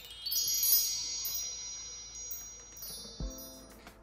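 Sparkling chime sound effect of a video intro: a quick rising run of bright high chime notes about a third of a second in, ringing on and slowly fading, with a short lower note and a soft thump near the end.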